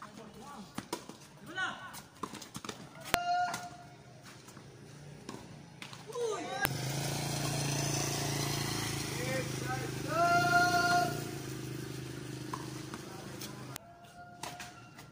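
Tennis ball struck by rackets during a doubles rally: sharp pops a second or more apart, the loudest about three seconds in, with short calls from the players. From about halfway a steady low hum joins in.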